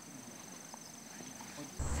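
Quiet outdoor ambience with a faint, steady, high-pitched insect trill, crickets or cicadas. Near the end a cut brings in louder talking.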